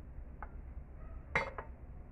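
A frying pan set back down on a gas stove's metal burner grate: a light knock about half a second in, then a sharp metallic clank with a quick second knock about a second and a half in.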